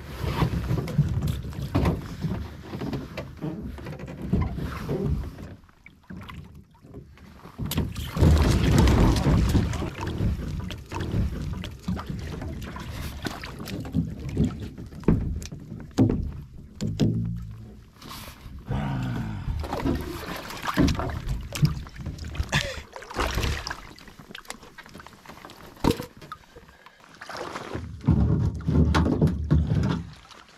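Water splashing and sloshing around a kayak overloaded with firewood as it tips over and takes on water in the shallows, with branches knocking against the hull at irregular moments. The splashing is heaviest near the end, as someone wades in beside the swamped boat.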